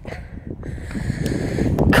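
A person breathing heavily over a low rumble of wind on the microphone, with a sharp breath near the end.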